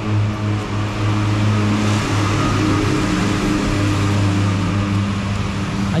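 Steady low mechanical hum from a running motor, with a rushing noise that swells for a few seconds in the middle.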